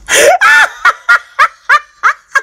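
High-pitched laughter: a longer opening cry, then a run of short pitched 'ha' bursts at about four a second.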